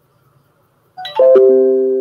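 A loud chime of four or five quick ringing notes stepping down in pitch, starting about a second in and fading slowly.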